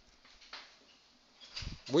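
Quiet room, then near the end a soft low thump followed by a man's short exclamation, "uy", rising in pitch.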